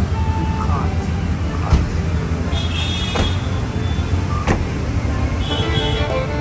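Steady low rumble of road traffic and vehicle engines on a city street.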